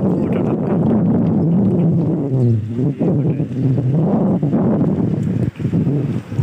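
Indistinct voices of people talking nearby, with wind rumbling on the microphone.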